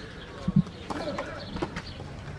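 A tennis ball impact: a short, dull knock about half a second in, doubled in quick succession.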